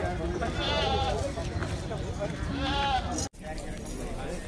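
Goat bleating twice, two quavering calls, one about half a second in and one near three seconds, over the chatter of a crowd.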